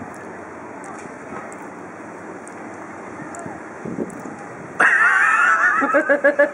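Steady low outdoor background noise, then, shortly before the end, a sudden loud high-pitched burst of a person's laughter.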